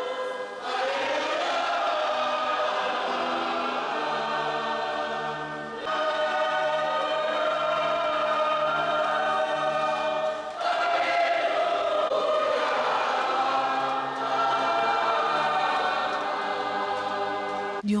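A choir singing a hymn in church, long held notes in several phrases, each starting afresh after a short break.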